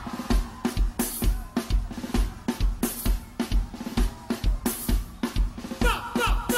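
A live merengue band's drums and percussion playing on their own without singing. There is a steady kick-drum beat about twice a second, with snare hits in between and a few cymbal crashes.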